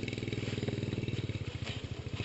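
An engine idling steadily nearby, with a fast, even pulse.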